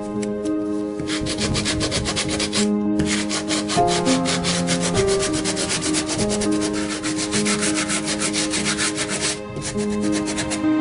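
Hand sanding of a painted wooden cupboard door with a folded piece of sandpaper, in quick, even rasping strokes that start about a second in, break off briefly near three seconds and stop shortly before the end. Background music plays underneath.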